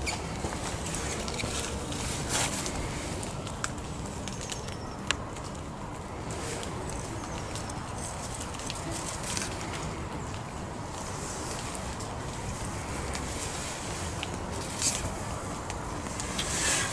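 A tent stake being worked into leaf-littered ground by hand: a few scattered sharp clicks and small rustles over steady low background noise.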